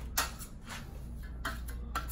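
Steel plastering trowel and spatula knocking and scraping against each other in a handful of short strokes as plaster is worked between them, over a low steady hum.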